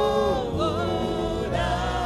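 Live gospel worship singing: a lead singer and backing vocalists singing into microphones, with a new note held from about one and a half seconds in.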